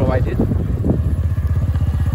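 Motorcycle engine running steadily with a rapid, even pulse, as if heard while riding. A few spoken words come in the first second.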